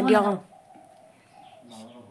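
A single spoken word at the start, then a faint, steady, low-pitched bird call in the background.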